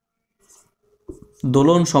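Marker pen writing on a whiteboard: a few faint strokes in the first second, then a man's speaking voice takes over from about halfway and is the loudest sound.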